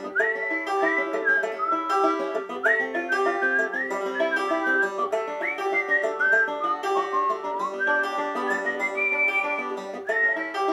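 Banjo picking the chord rolls of the song's instrumental solo, with a whistled melody over it that slides up into its notes and holds them.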